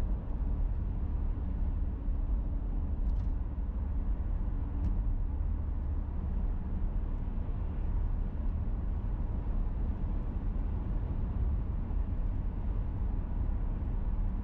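Car driving at steady speed, heard from inside the cabin: a steady low rumble of engine and tyre noise.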